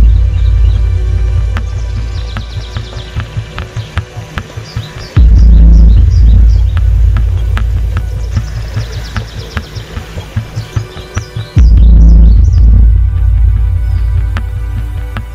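Suspense film score: deep low booms strike twice, about six seconds apart, each fading away under a fast pulsing beat, with birds chirping high above.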